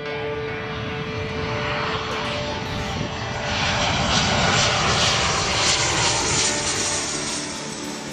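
Jet airliner flying over, its engine noise swelling to a peak in the middle and easing off near the end, over soft background music.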